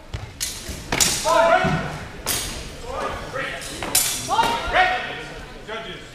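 A HEMA sword bout in an echoing sports hall: several sharp knocks of weapons striking as the fencers exchange, mixed with loud shouting.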